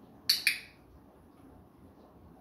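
Handheld dog-training clicker pressed and released: a sharp double click a fraction of a second apart. It marks the puppy's correct touch of the target toy, the signal that a food reward follows.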